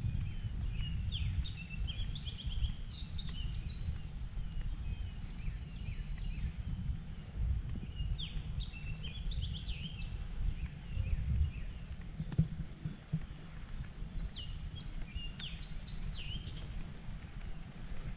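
Several songbirds singing and chirping in short rising and falling notes, with a buzzy trill about six seconds in, over a steady low rumble.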